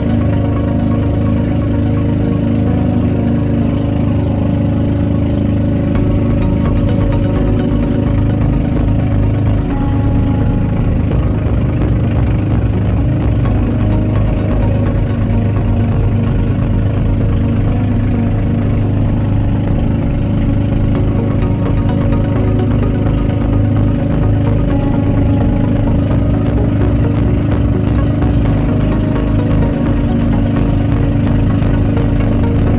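Outrigger boat (bangka) engine running loud and steady as the boat travels over the sea.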